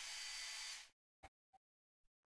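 Handheld hair dryer blowing steadily with a faint high whistle, drying a layer of acrylic paint before the next goes on, then switched off suddenly about a second in, followed by a couple of faint clicks.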